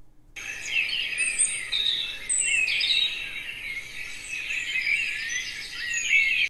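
Recorded birdsong from a relaxation app, played through a Google Home smart speaker. Many small birds chirp and twitter together in a continuous, high-pitched chorus that starts about a third of a second in.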